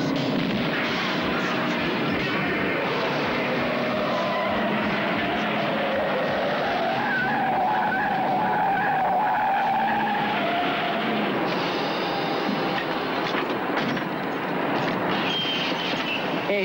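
A tractor-trailer truck and a pursuing car driving hard and skidding on a gravel shoulder, with tyres squealing.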